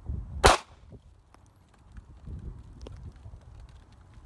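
A single semi-automatic pistol shot about half a second in: one sharp, loud crack with a brief echo.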